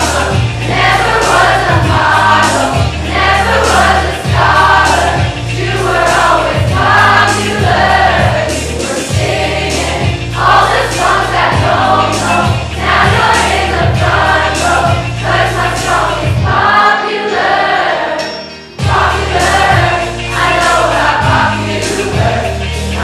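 A large group of young voices singing a pop song together over an accompaniment with a steady low beat. The music drops away briefly about three-quarters of the way through, then comes back.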